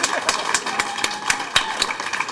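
Scattered applause from a small audience: sparse, irregular handclaps.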